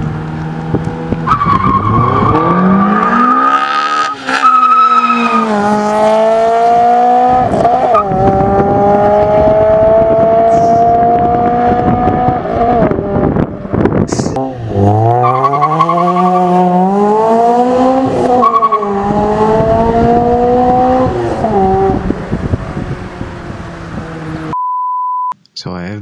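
Toyota 2ZZ-GE 1.8-litre naturally aspirated four-cylinder in a Corolla AE111, revved hard under acceleration in two runs. Each run climbs in pitch, drops back at each gear change and climbs again to a high, steady pull. A short steady beep follows near the end.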